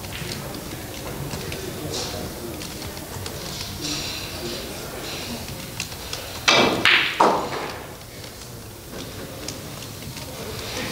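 Pool shot on a 9-ball table: three loud knocks close together as the cue strikes the cue ball and the balls collide, about six and a half seconds in. Faint clicks of balls are heard in the low room noise before it.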